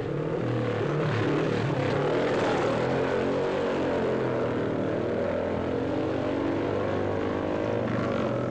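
Racing motorcycle engine running hard as one bike approaches along the road, its pitch sliding up and down.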